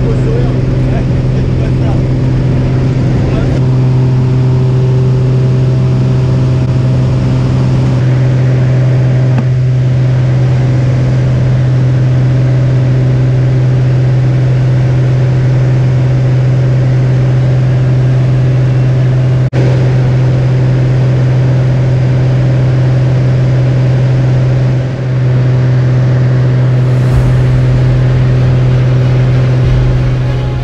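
Engine and propeller of a single-engine light high-wing plane droning loudly inside the cabin: a steady deep hum with overtones, at full power through the takeoff roll and climb.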